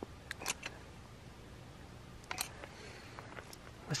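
A few faint, short clicks over quiet background hiss as self-leveling RV roof sealant is pressed out of a handheld cartridge: three in the first second and a couple more around the middle.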